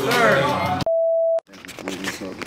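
A single steady test-tone beep, the sound of a TV colour-bars test card, lasting about half a second and starting and cutting off abruptly about a second in, between stretches of voices.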